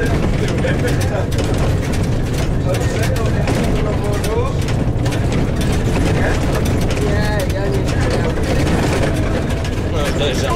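Jelcz 120M city bus driving steadily along a narrow country road: its diesel engine and road noise heard from inside the cabin, an even low rumble. Passengers talk quietly in the background.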